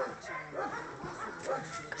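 Dogs whimpering and yipping in a string of short calls that bend up and down in pitch.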